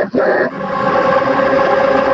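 Production-logo jingle run through heavy audio effects: after a brief break just after the start, a sustained cluster of held, distorted tones.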